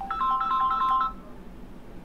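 Phone ringtone: a quick melody of clean beeping notes that stops about a second in.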